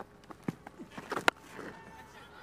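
Stump-microphone sounds of a cricket delivery: a few short, sharp knocks, one of them the bat striking the ball about half a second in, over a faint steady crowd hum.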